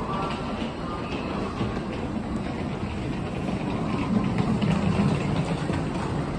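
Steady low rumble and hum of an electric express train standing at a station platform, growing louder about four seconds in.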